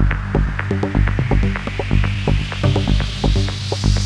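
Progressive house DJ mix: a steady kick drum at about two beats a second under a pulsing bassline, with short hi-hat ticks and a noise riser climbing steadily in pitch as a build-up. The kick drops out briefly near the end.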